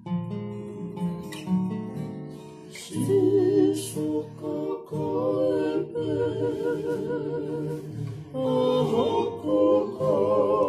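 A group of men singing together in harmony to a strummed acoustic guitar, with long wavering held notes. The singing gets louder about three seconds in.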